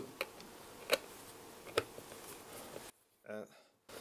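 Three faint clicks about a second apart: a Phillips screwdriver working a back-cover screw of a handheld multimeter loose, with the audio cut to silence near the end.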